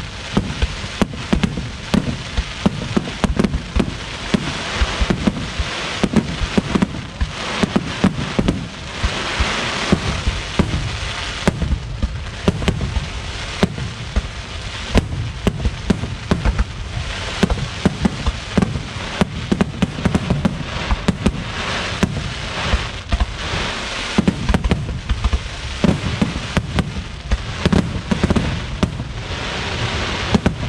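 Aerial firework shells bursting one after another in a dense, unbroken barrage: many sharp bangs a second over a continuous hissing crackle.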